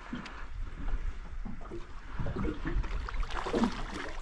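Water lapping and splashing around a small boat, with scattered light knocks and clicks, while a hooked fish is played alongside.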